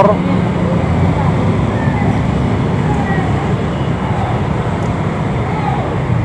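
Busy street traffic dominated by motor scooters idling and moving past close by, a continuous engine hum, with indistinct voices of people nearby.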